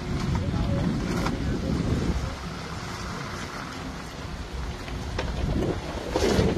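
Low rumble of wind buffeting the microphone over the sound of slow street traffic, louder in the first couple of seconds.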